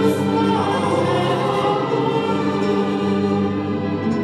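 Choir singing long held chords over a string quartet accompaniment, the lower notes shifting to a new chord about halfway through.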